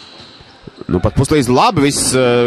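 A TV basketball commentator speaking in Latvian over the low arena background, his voice coming in loud about a second in. Just before he starts, a few faint thumps of a ball dribbled on the court.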